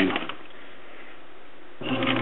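Whirlpool WTW4950XW high-efficiency top-load washer running its wash cycle, a steady, even mechanical noise with the load turning in suds.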